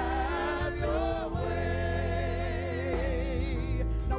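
Gospel praise team singing a slow worship song in long held notes with vibrato, over sustained accompaniment.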